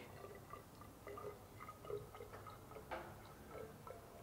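Water poured in a thin stream from a small beaker into a narrow measuring cylinder, heard as faint, irregular drips and small plinks as the cylinder fills.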